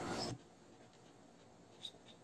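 Faint scratching of a drawing compass's pencil on paper as circles are drawn, with a short tick near the end. A louder, steadier noise cuts off suddenly about a third of a second in.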